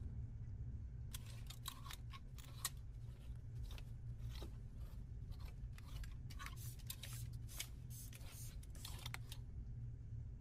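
A run of short, irregular clicks and rustles from hands handling a cloth bow tie strap and its metal hook at a domestic sewing machine, over a steady low hum. The clicks come in uneven clusters rather than a regular stitching rhythm, and stop shortly before the end.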